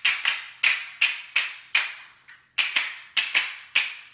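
A pair of small metal hand cymbals struck together in a steady rhythm, about three strikes a second, each giving a short bright ring, with a brief pause a little past the middle.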